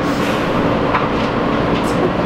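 Steady rumble inside a New York City subway car, with a low steady hum and a couple of faint clicks.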